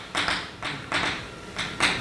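Chalk writing on a blackboard: a quick run of short scratching and tapping strokes, several a second.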